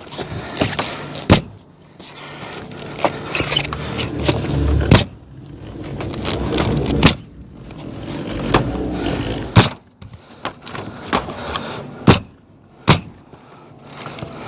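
A pneumatic coil roofing nailer firing single nails through steel valley metal into the roof deck: six sharp shots, one to two and a half seconds apart, with scuffing and rustling of the metal sheet in between.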